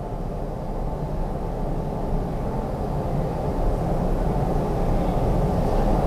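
A low rumbling noise with no distinct tones, slowly growing louder.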